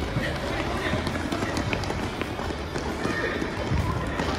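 Children playing futsal on an indoor court: running footsteps, the odd touch of the ball, and distant children's voices, with no single loud event.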